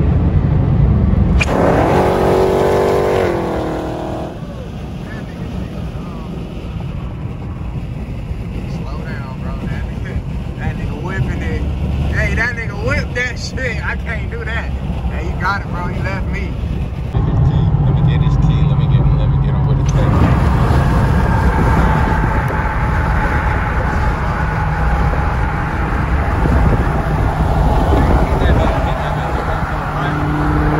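Car engines and road noise at highway speed, heard from inside a car. About two seconds in, an engine note climbs steadily in pitch as a car accelerates hard. Near the end, a steady engine and tyre drone continues at speed.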